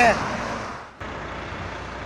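Steady background noise of highway traffic heard from the roadside, with a man's voice ending right at the start. The noise dips and cuts off abruptly about a second in, then resumes at the same level.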